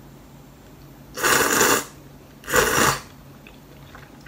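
A person slurping noodles, two loud slurps of about half a second each, a little over a second apart.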